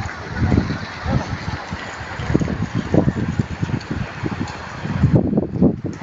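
Wind buffeting a phone's microphone in irregular low gusts over a steady outdoor hiss, heaviest near the end.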